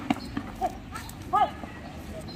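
Two short, high-pitched shouts from kho-kho players about three-quarters of a second apart, over a background of outdoor voices, with a couple of sharp clicks right at the start.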